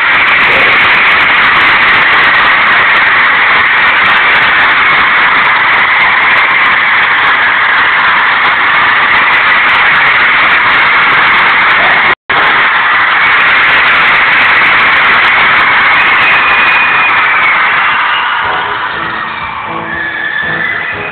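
Arena crowd screaming and cheering without a break, a loud, dense, high-pitched wall of noise that eases slightly near the end. The recording drops out for a split second about twelve seconds in.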